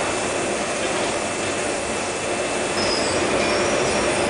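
Steady roar of a glassworks furnace and its burners and fans, even and unbroken, with a few faint high tones about three seconds in.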